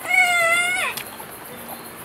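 A single high-pitched call, held at one pitch for just under a second, then dropping in pitch as it ends.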